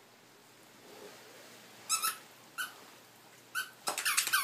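A dog's squeaky rubber toy being squeezed during play: three short, high squeaks in the second half, with the squeaking quickening right at the end.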